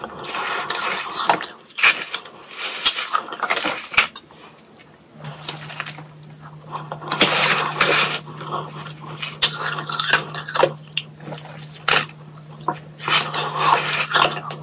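A plastic spoon scooping and scraping powdery shaved ice in a tray, with soft crunching of the ice being chewed, coming in uneven bursts a second or two apart.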